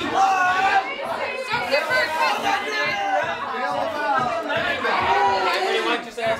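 Several people talking at once, a steady run of overlapping, indistinct chatter.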